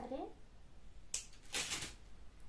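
A voice trails off, then a sharp click about a second in and a short rustle just after, from hands handling craft materials such as tape and paper.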